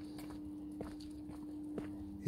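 Faint footsteps on a pavement, a few separate steps, over a steady low hum.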